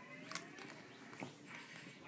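Faint mouth sounds as a jelly bean is popped into the mouth and chewed, with two small clicks, one about a third of a second in and one just over a second in.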